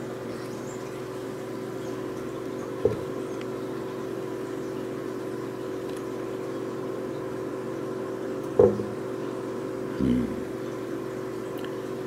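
A steady mechanical hum, with short knocks about three seconds in and, loudest, a little past eight seconds, and a brief low sound near the end.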